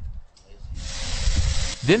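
Steady hiss of arc welding that starts abruptly about a second in, spot welding two steel sections of a door frame together, with a low rumble beneath.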